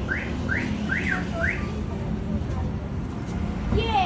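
Steady rumble of highway traffic. In the first second and a half come five quick, short rising chirps, whistle-like.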